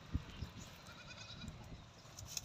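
Faint animal bleating at a distance, a weak wavering call through the middle, with a couple of soft low thumps near the start.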